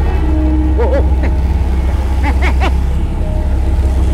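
Motor scooter riding along the road, its engine and road noise a steady low rumble, under short alarmed cries.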